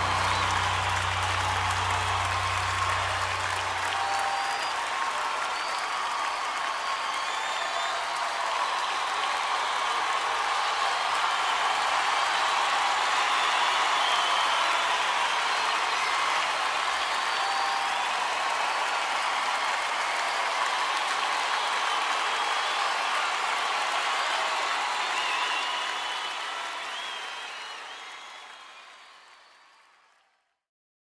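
Audience applauding after a live song. The band's last low note dies away about four seconds in, and the applause then fades out over the final few seconds.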